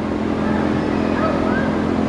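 A steady low mechanical hum over an even rushing noise that does not change, with faint voices in the background around the middle.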